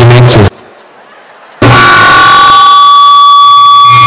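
A man's speech breaks off half a second in. After a second's gap comes a very loud, distorted meme sound effect: a flat, held horn-like tone that runs on without changing pitch.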